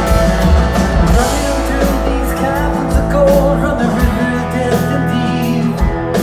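Live rock band playing: electric guitars sustaining chords over bass and drums, with repeated cymbal crashes.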